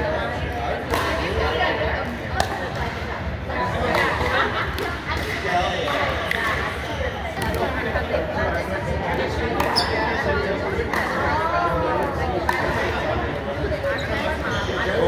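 Voices chattering and calling, echoing in a large gym, with scattered sharp pops of pickleball paddles striking the plastic ball and the ball bouncing on the hardwood court.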